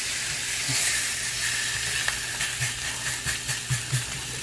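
Pork chops sizzling in a cast iron skillet: a steady hiss of frying fat, with a scatter of light crackles and clicks in the second half.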